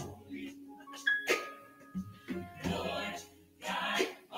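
Many voices speaking together in unison, a congregation reciting, with a short chime-like ringing tone about a second in.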